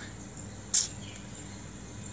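Insects trilling steadily at a high pitch in the background, with one brief sharp hiss-like noise about three quarters of a second in.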